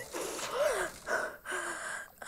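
A woman gasping for breath while water is poured into her mouth: several ragged gasps in a row, one with a short moan about half a second in.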